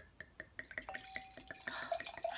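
Red wine being poured from a bottle into a stemmed glass wine glass: a faint, irregular run of small glugs and drips, with a short steady tone near the middle.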